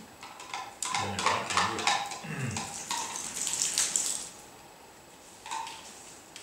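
Metal spoons clicking and scraping against small cups during eating, a run of small quick clicks and scrapes that stops about four seconds in.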